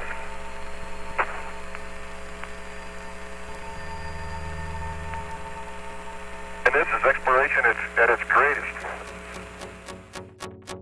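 Steady hum and hiss of an Apollo air-to-ground radio transmission, with a single click about a second in and a short burst of radio voice about seven seconds in.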